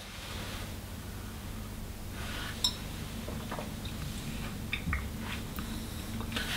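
A man sipping and swallowing water from a glass, faint, with a few light clicks, over a steady low hum.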